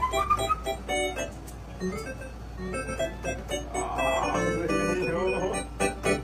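Korg electronic keyboard played in short, separate notes and brief phrases, busiest in the first second and again near the end.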